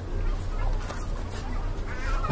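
Busy fast-food restaurant din: a steady low hum with indistinct background noise and a few light clicks of cutlery on a plate.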